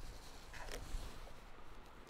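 Quiet spell with a low rumble and one faint, brief rustle a little under a second in.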